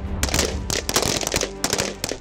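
Rifle fire from a line of shooters: many sharp shots at irregular, overlapping intervals, several a second.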